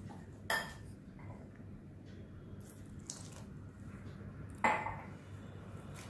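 Wire whisk beating a thin flour-and-egg batter in a bowl, with soft wet scraping strokes and two sharp clinks of the whisk against the bowl, one about half a second in and one a little before the end.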